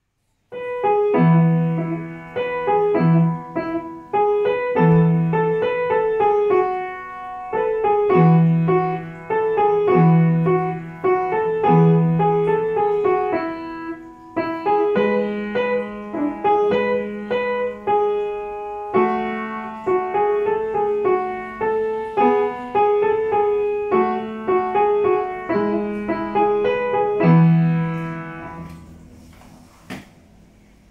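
Upright piano played by a child: a short, lively dance piece with a steady left-hand bass pattern of repeated low notes under a melody, starting about half a second in. It ends with a last chord that dies away about two seconds before the end.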